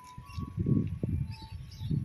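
Outdoor ambience dominated by uneven low rumbling gusts of wind on the microphone, with a few faint high chirps.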